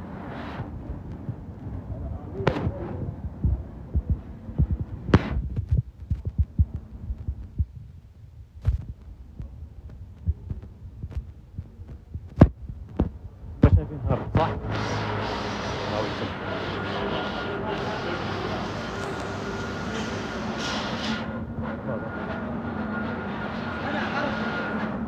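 Irregular low thumps from a handheld phone's microphone being jostled while walking. About halfway through they give way to a steady street background hum with a faint high steady tone.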